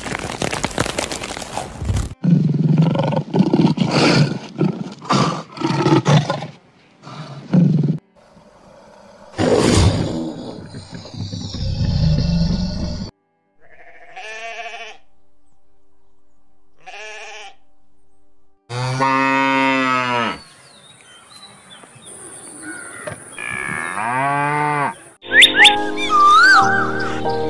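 A run of separate animal-sound clips: a dense crackling noise for the first two seconds, then a series of short rough calls, then sheep bleating in the second half, with two long wavering bleats.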